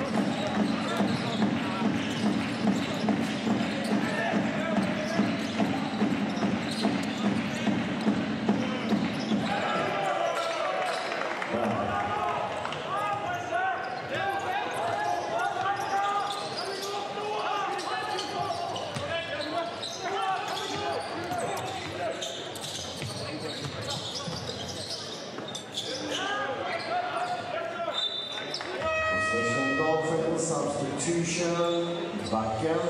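Live sound of a basketball game in an indoor arena. A regular, rhythmic thumping runs for about the first ten seconds, then gives way to a mix of crowd voices, and a short steady tone sounds near the end.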